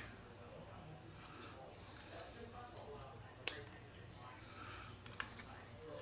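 Faint handling of a small plastic DJI wireless-mic receiver and a USB charging cable as the cable is plugged in. There is a sharp click about three and a half seconds in and a lighter one near the end.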